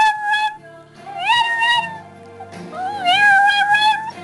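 Chihuahua 'singing': howling in long held notes that slide up at the start and waver. One howl ends shortly after the start, another comes about a second in, and a longer one begins midway. Quiet music with sustained low notes plays beneath.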